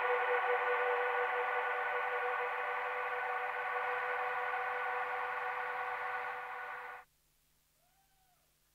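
Sustained electronic ambient drone: a chord of many steady held tones from the synthesizer and effects rig, fading slowly and then cut off abruptly about seven seconds in, leaving near silence.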